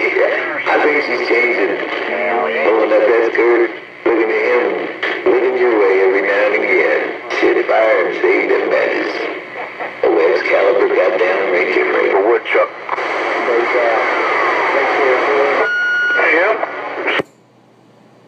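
A distant station's voice coming in over a Galaxy CB radio's speaker, thin and noisy, too garbled to make out. Shortly before the end a brief beeping tone sounds, then the transmission cuts off suddenly, leaving a faint hiss.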